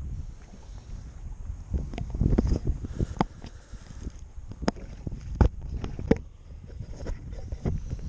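Wind buffeting the microphone as a steady low rumble, with scattered knocks and clicks, the sharpest about five and a half seconds in.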